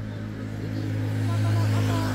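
Low engine hum of a motor vehicle passing close by on the street, growing louder to a peak about a second and a half in, then easing off.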